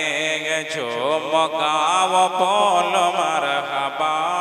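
A man singing a naat solo into a microphone, holding long wavering notes.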